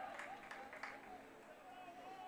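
Faint field ambience at a football game: distant voices calling out, their pitch wavering, over a low background hum.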